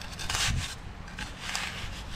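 A small metal trowel scraping and digging into wet sand: a longer scrape about a quarter second in, and a shorter one about a second and a half in.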